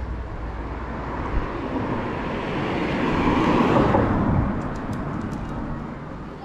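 A motor vehicle passing by on the road. Its noise swells to a peak about three and a half seconds in, then fades.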